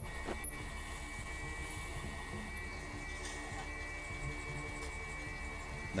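Tormek T4 wet grinder running at low speed with a knife bevel pressed against its stone: a steady low motor hum with a steady high tone held over it.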